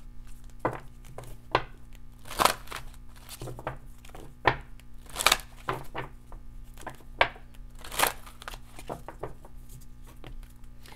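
A deck of oracle cards being shuffled and handled by hand: sharp slaps and snaps of the cards at irregular intervals, about a dozen in all, over a faint steady hum.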